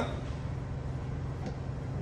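Steady low machine hum, with one faint click about one and a half seconds in.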